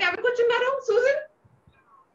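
A woman's voice for just over a second, then a pause.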